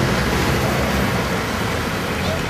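Steady road traffic noise: an even wash of passing vehicles with a low rumble underneath.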